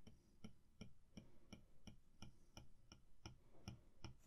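Faint, evenly spaced taps of an Apple Pencil tip on the iPad's glass screen, about three a second, as short strokes are drawn one after another.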